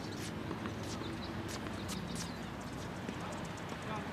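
Tennis balls being struck and bouncing on a hard court: a few short, sharp pops at irregular intervals, with faint voices low in the background.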